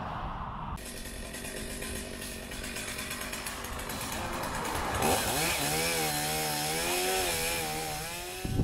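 Chainsaw running high up in a tree while it cuts off branches. About five seconds in, the engine pitch rises and wavers up and down as the saw works through the wood.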